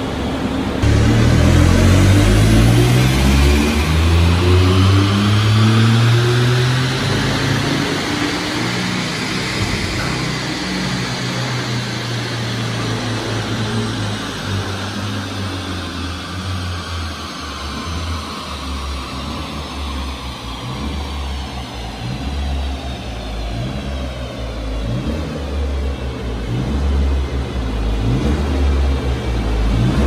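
Ford Fiesta ST Mk8's turbocharged 1.5-litre three-cylinder engine pulling hard on a rolling-road dyno power run. Engine pitch climbs sharply about a second in. Then a long whine from the tyres and rollers rises and slowly falls as the car runs down, with the engine picking up again near the end.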